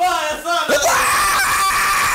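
Men's voices shouting, with the pitch rising into a long, high, held scream in the second half.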